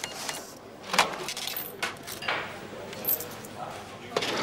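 Canteen clatter: a handful of sharp clinks and knocks of plates, trays and cutlery, spaced about a second apart over a low background.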